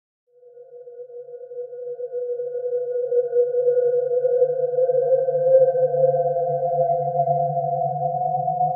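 Eerie horror-film background music: a drone of a few sustained, unchanging tones with a low hum beneath. It fades in from silence and swells over the first few seconds.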